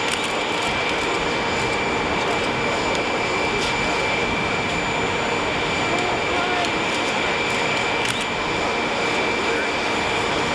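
Jet aircraft turbine running steadily, a constant high whine over an even rush of engine noise.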